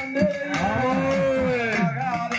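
Kummi folk-dance music led by a rubbed urumi drum, its pitch sliding up and down about five times a second with a cow-like moan. Above it, a long tone arches up and back down, and a few sharp strokes of drum or claps cut through.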